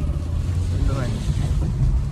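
Low, steady engine and road rumble inside the cabin of a Maruti Suzuki Dzire as the car is driven along and given some throttle.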